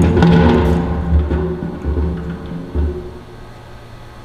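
Empty steel drum slid across a concrete floor, its shell resonating with a low, hollow drone and an uneven scraping rumble. It stops about three seconds in, once the drum is in place.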